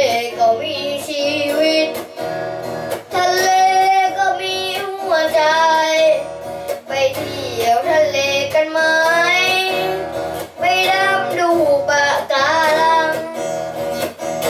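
A boy singing into a microphone in phrases with short breaks, accompanying himself by strumming chords on an electric guitar.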